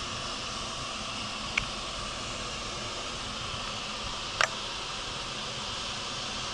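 Steady rush of air from the heaters and fans of a bed bug heat treatment blowing hot air into the room, with two short clicks, one about a second and a half in and one about four and a half seconds in.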